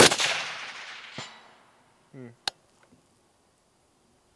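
A single shot from a suppressed DRD Paratus .308 Winchester rifle: a sharp report at once, followed by a long echoing decay. About a second later comes a faint ping, the bullet striking the steel target.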